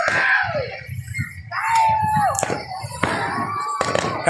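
People's voices shouting and calling out, with a few sharp cracks near the end.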